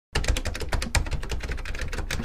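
Computer keyboard typing sound effect: a rapid, even run of key clicks.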